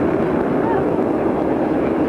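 Loud, steady roar of jet aircraft engines heard across an airfield through a camcorder microphone.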